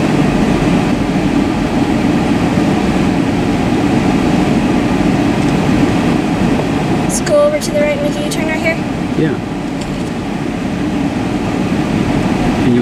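Steady low hum inside a car cabin as the car moves slowly. A few clicks and a brief voice-like sound come about seven to nine seconds in.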